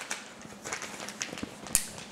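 Clear plastic zip-lock bag crinkling and crackling as it is handled, a run of small clicks with the sharpest one just before the end.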